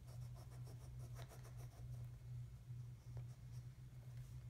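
Wax crayon scribbling on a paper worksheet in quick, repeated back-and-forth strokes, quiet and scratchy, over a steady low hum.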